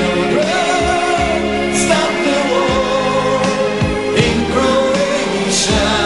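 Pop song: singing over a band, the melody sliding and held over sustained chords, with a steady drum beat.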